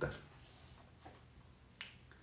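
A single short, sharp click near the end, over quiet room tone.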